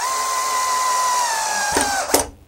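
Cordless drill running steadily for about two seconds as it drives a screw up into the wooden fence of a table-saw crosscut sled, its motor whine dropping slightly in pitch near the end before it stops.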